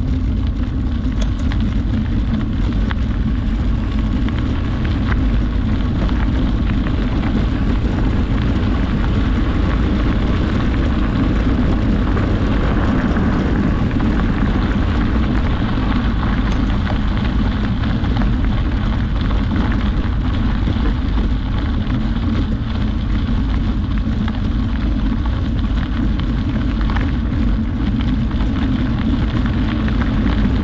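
Steady wind rumble on the microphone over the crunch of tyres rolling along a gravel road.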